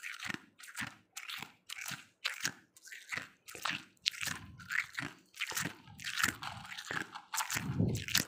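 Freezer frost being chewed close to the microphone: a steady run of crisp crunches, about two a second.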